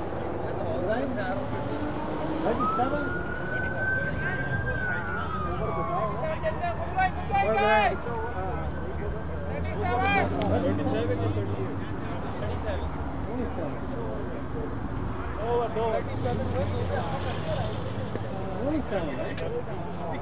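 A siren wails a couple of seconds in, a long tone that rises and then slowly falls, with a couple of wavering bursts after it. People talk in the background throughout.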